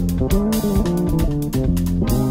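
Jazz instrumental band recording: guitar playing over a bass guitar line and drums with regular cymbal strikes.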